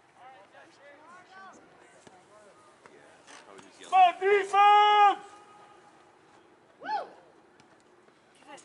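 People shouting across an outdoor soccer field: faint distant calls at first, then two short shouts and one long held yell about four to five seconds in, the loudest thing, and another brief shout near the end.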